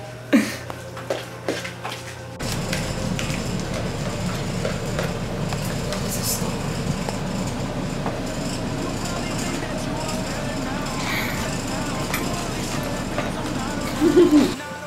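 A few sharp clinks of spoons against cereal bowls. About two seconds in, a sudden steady low rumbling noise takes over for the rest.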